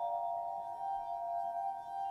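Musical glasses (a glass harp): water-tuned wine glasses sounded by fingers rubbed around their rims, holding a chord of several steady, ringing tones that waver slightly.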